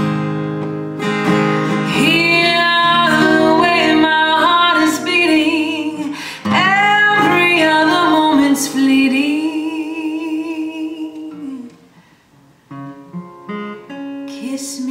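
Solo acoustic guitar with a woman singing a slow jazz melody over it, ending on a long held note with vibrato. The music drops out briefly near the end, then the guitar starts again.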